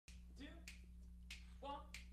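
Finger snaps in a steady beat, about one and a half a second, with soft talk between them: a band director snapping the tempo to count off a jazz ensemble.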